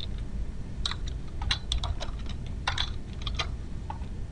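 Typing on a computer keyboard: about a dozen keystrokes in uneven runs, with short pauses between them.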